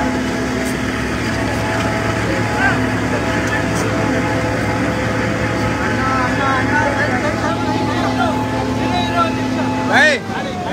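Steady hum of an idling engine under a crowd of people talking over one another.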